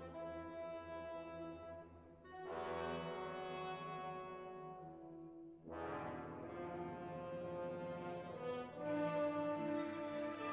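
Orchestral film score led by brass, playing held chords that swell in again about two and a half seconds in, near six seconds and near nine seconds.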